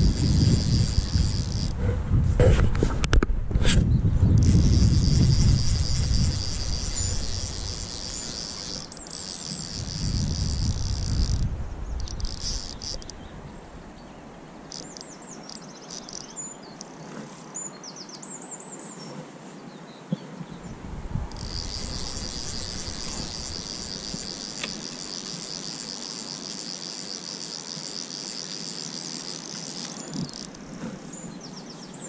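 Insects chirring steadily in a high-pitched continuous trill, broken by a few pauses. The longest pause comes in the middle, where short bird chirps are heard. A low rumble runs under the first few seconds and fades out before the middle.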